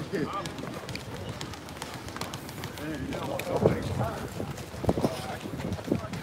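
Indistinct background voices over outdoor ambience, with a few footsteps on a concrete walkway.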